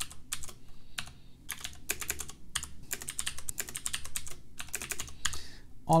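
Typing on a computer keyboard: quick runs of key clicks with short pauses between them.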